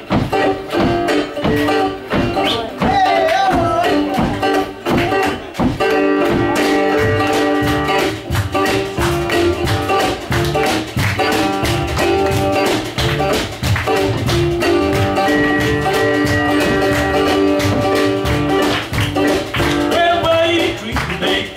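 Live acoustic blues trio playing an instrumental passage: plucked guitar with upright double bass and hand percussion keeping a steady beat.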